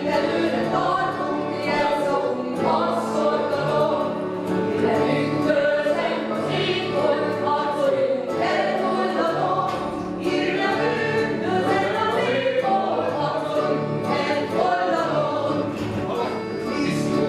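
Music with a choir of voices singing held, swelling notes over a steady low accompaniment.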